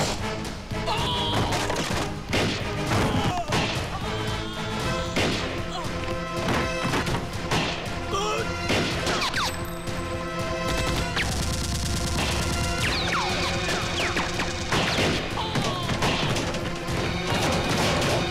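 Action-film sound mix: a dramatic background score with repeated crashes, impacts and gunshot effects layered over it.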